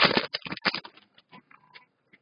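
Foil wrapper of an O-Pee-Chee Platinum hockey card pack crinkling and tearing open: a dense run of crackles for most of the first second, then a few faint clicks and rustles as the cards are handled.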